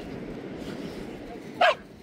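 A dog gives one short, high yip about three-quarters of the way through, over a steady rush of wind.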